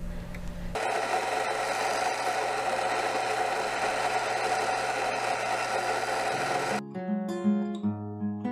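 Rancilio Rocky SD burr grinder motor grinding coffee beans straight into a portafilter: a steady grinding whir that starts about a second in and stops shortly before the end. Acoustic guitar music comes in as it stops.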